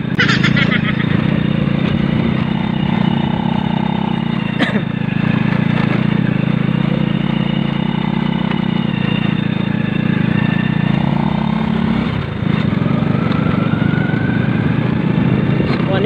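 Motorcycle engine running steadily as the bike is ridden over a rough dirt track, with a sharp knock about five seconds in. The engine sound dips briefly after about twelve seconds, then its note rises as it pulls again.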